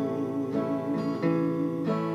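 Acoustic guitar strummed, a stroke about every two-thirds of a second, with long held melody notes sounding over the chords.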